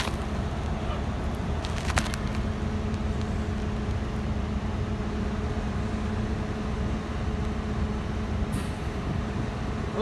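Steady low engine rumble with a constant hum, from a running vehicle nearby, broken by a couple of sharp clicks, the loudest about two seconds in.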